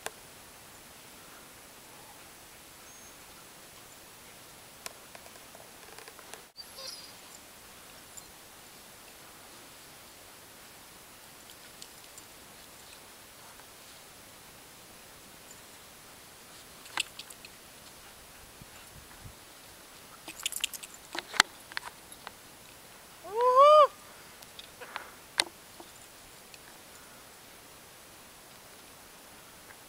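Faint steady outdoor hiss with scattered clicks and knocks in the second half. Near the end comes one short, high dog's yelp whose pitch rises then falls.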